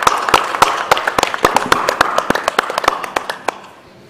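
An audience applauding, a dense patter of many hands clapping that thins out and stops about three and a half seconds in.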